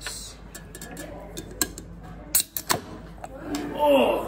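Aluminium Coca-Cola can being opened: a few sharp clicks of the pull tab, with the crack of the tab breaking the seal a little over two seconds in. A voice comes in near the end.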